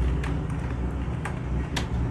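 A few separate computer keyboard keystrokes over a steady low hum.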